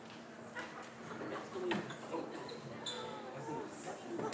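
Voices chattering in a large gymnasium, with several sharp thumps of a ball bouncing on the gym floor.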